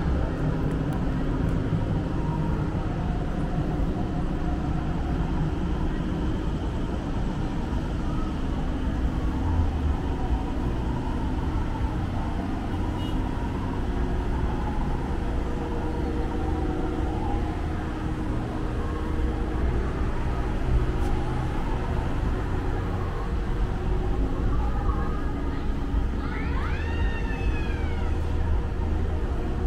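Outdoor street ambience: a steady low rumble of traffic with faint voices of passers-by. Near the end there is a short high-pitched sound that rises and falls.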